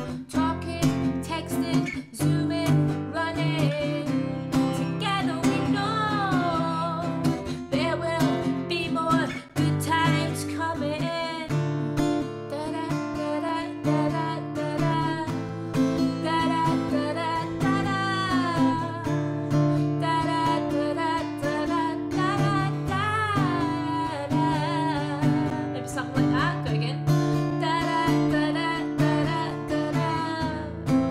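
A woman singing a song's melody over acoustic guitar chords.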